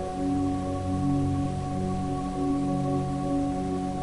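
Background ambient music: sustained, bell-like drone tones held steady, over lower notes that shift slowly every second or so.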